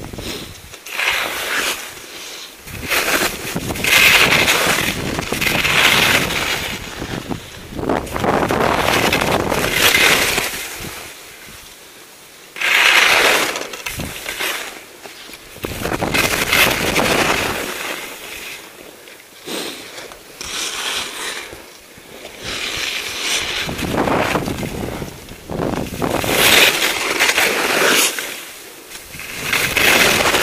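Skis scraping and hissing across snow while turning through moguls, a swell of scraping with each turn, about a dozen in all, mixed with wind noise on the microphone.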